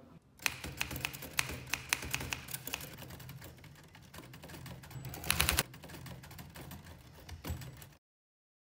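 Typewriter keys clacking in an irregular run of sharp strikes, with a dense burst of clatter just after five seconds. The clacking stops shortly before the end.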